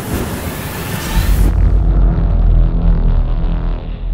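Produced intro sound effect: a rushing, fiery whoosh with bright hiss for about the first second and a half, then a deep rumbling boom with a held musical sting over it that begins to fade near the end.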